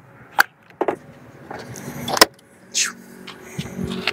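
A DC fast-charging connector being handled and plugged into the Kia EV6's charge port: several clicks and knocks, the sharpest about two seconds in. A steady low hum sets in during the last second.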